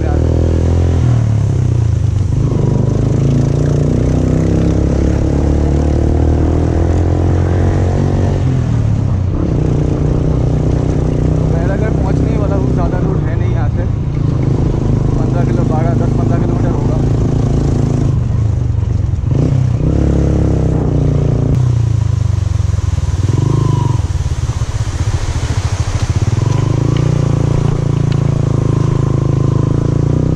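Motorcycle engine running steadily while being ridden, its pitch rising and falling several times.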